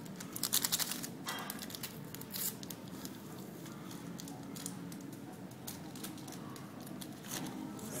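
Paper sweetener packet (Splenda) being torn open and crinkled, a burst of quick rips in the first second followed by lighter crinkling and rustling as it is emptied.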